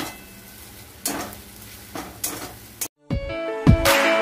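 A metal spatula scraping and stirring chopped vegetables in a metal wok over a low sizzle, in several separate strokes. About three seconds in, the sound cuts off and background music with a beat begins.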